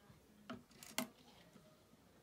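Small plastic Lego Dots tiles clicking as they are handled on a tabletop: two light clicks about half a second apart, the second louder.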